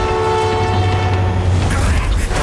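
Train horn in a film soundtrack, one long steady blast over a low rumble, fading near the end.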